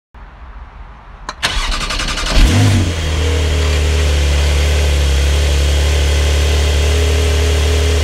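Car engine being started: a click, about a second of starter cranking, a sharp rev as it catches, then a steady idle.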